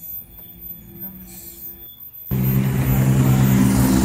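A faint low hum, then, about two seconds in, a sudden jump to a loud, steady motorcycle engine idling close by.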